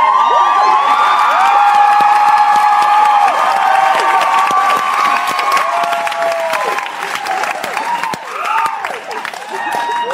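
Theatre audience cheering, with many high-pitched screams and whoops over applause, easing off a little after about seven seconds.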